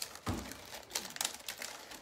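Light, irregular clicks and taps of multigrain crackers being set out by hand on a charcuterie board.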